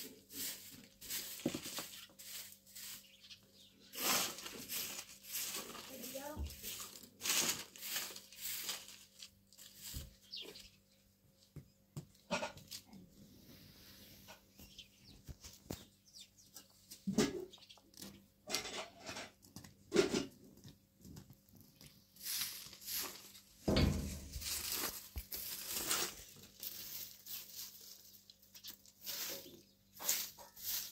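Straw broom sweeping a packed-dirt yard: runs of short, scratchy strokes, with a low thump about two-thirds of the way through.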